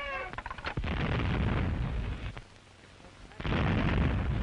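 Anti-aircraft guns firing: a few sharp cracks, then two heavy rumbling blasts, the first about a second in and the second about two seconds later.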